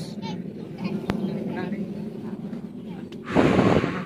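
Truck engine running steadily while the truck sits stuck in mud, under faint voices, with a loud rushing burst of noise near the end.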